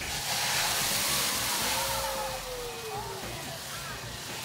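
Cooking-oil grease fire on a stovetop flaring up into a large fireball. A sudden whoosh and hiss of flames that eases off after a couple of seconds.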